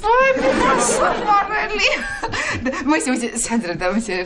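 Only speech: a man and a woman in conversation, opening with a high-pitched exclamation.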